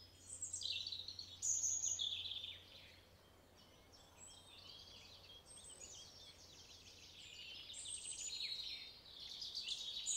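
Faint birdsong: quick high chirps and trills, livelier in the first few seconds, thinning out around the middle and picking up again near the end.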